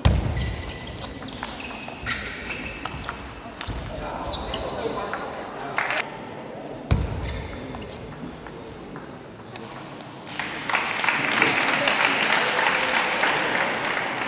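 Table tennis rallies: the celluloid ball clicking off rubber bats and the table, with sports shoes squeaking on the court floor. About ten seconds in, the hall breaks into steady applause that lasts to the end.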